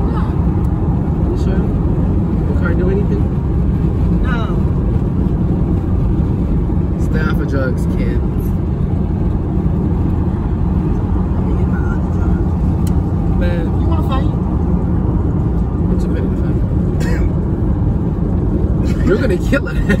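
Steady road and engine noise inside a moving car's cabin, a low, even rumble. Faint, brief voices come through at times, and a laugh comes at the very end.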